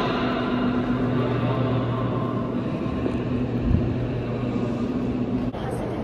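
Steady low hum over a haze of indoor background noise, with a single low thump a little before four seconds in; the background changes abruptly about five and a half seconds in.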